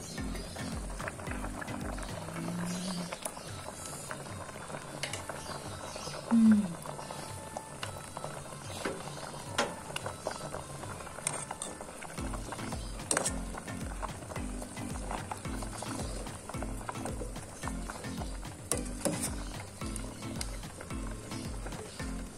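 An aluminium pot lid is lifted, then a metal ladle stirs and scoops a simmering fish curry in a steel pot, with light clinks against the pot over a soft bubbling hiss. A short, loud squeak comes about six seconds in. Background music with a steady beat plays in the first few seconds and again from about twelve seconds on.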